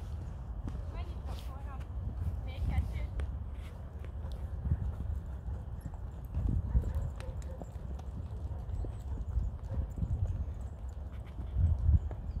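Hoofbeats of several ridden horses cantering past on a soft sandy dirt track, a run of dull thuds.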